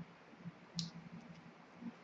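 Faint, scattered small clicks in a pause between sentences, with one brief hiss just under a second in.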